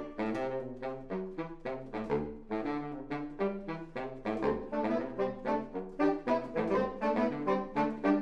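Saxophone quartet of soprano, alto, tenor and baritone saxophones playing together. It is a quick passage of short, separated notes in several parts over a lower bass line.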